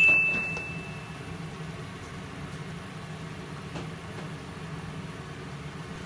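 A single clear ringing tone from a struck metal or glass kitchen item, fading away within about the first second and a half, over a steady low kitchen hum.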